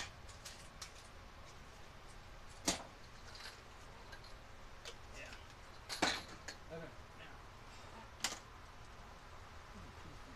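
Small metal washers and bolts clicking as they are handled and set down on a wooden desk: four sharp clicks a few seconds apart, with a few lighter ticks after the third.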